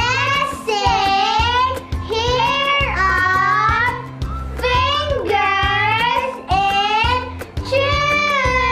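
Children singing a children's song over a backing track with a steady beat and bass line.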